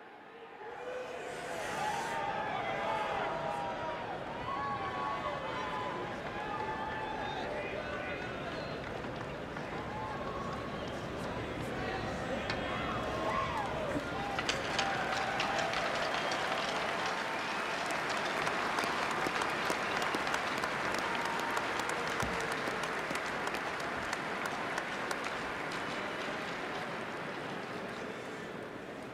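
Hockey arena crowd cheering and shouting, with the applause swelling into heavy clapping about halfway through as the ceremonial puck is dropped.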